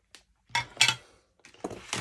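A few short, sharp plastic clicks and clacks as a hard plastic ink pad case and a stamping platform are handled.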